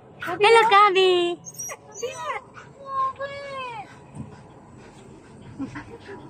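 Siberian husky whining and yowling: a long wavering call in the first second and a half, then shorter falling calls about two and three seconds in.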